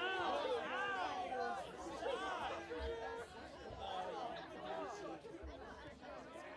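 Several voices shouting and calling out at once, the overlapping shouts rising and falling in pitch and loudest in the first couple of seconds.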